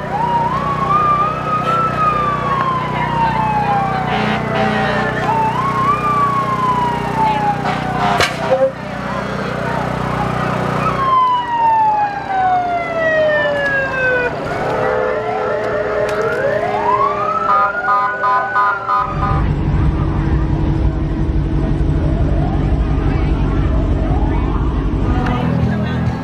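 Emergency-vehicle sirens wailing, each wail rising quickly then sliding slowly down in pitch, repeated several times. A steady low rumble runs underneath and grows much louder about three-quarters of the way through.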